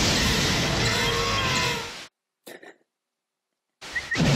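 Film sound effect of a shark bursting up out of a tank: a loud rushing splash of water with a low rumble, cut off abruptly about two seconds in. After a near-silent gap, a brief high whistle and the same splash start again right at the end.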